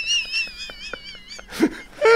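A person's high-pitched, wavering squeal of suppressed laughter, with a short louder burst of laughter near the end.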